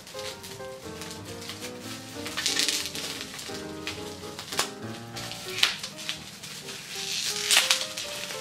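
Background music with short, steady notes, over a clear plastic bag crinkling in the hands as a small item is unwrapped. The crinkling comes in several bursts, the loudest about two and a half seconds in and again near the end.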